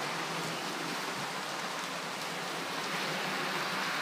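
Model Class 26 diesel locomotive running along the track, giving a steady, even noise of its motor and its wheels on the rails.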